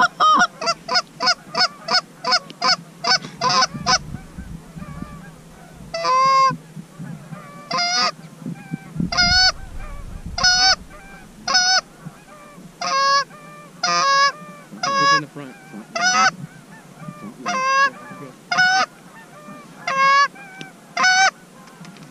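Goose call blown in imitation of Canada geese. It starts with a fast run of clucks, about three a second, then after a short pause gives single honks with a break in pitch, roughly one a second.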